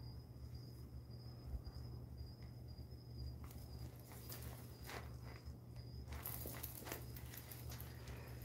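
Faint handling noise, soft rustles and clicks as a woven cotton handbag is lifted and slung onto a shoulder, mostly in the second half. Under it a steady low hum and a thin high whine that stops about six seconds in.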